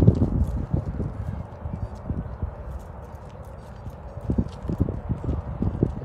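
Footsteps on an asphalt path, with a run of taps about three a second near the end, over a low, uneven rumble of wind on the microphone.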